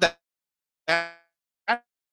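The presenter's voice in three short fragments through video-call audio: the end of a word, then a drawn-out hesitation sound and a brief syllable, with the audio dropping to dead silence between them.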